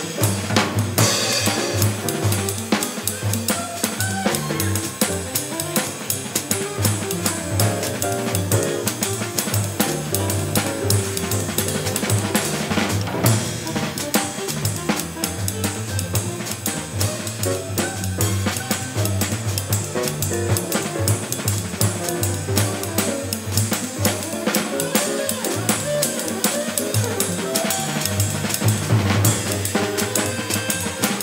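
Small-group jazz with the drum kit played busily up front (cymbals, snare and bass drum), while piano and bass sit quieter behind. It is heard from one channel of an old stereo recording where the drums were panned to that side.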